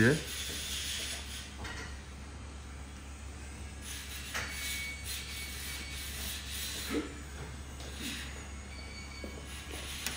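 A steady low hum with faint rubbing and a few soft handling sounds as a fine brush and a plaster dental model are worked in the hands.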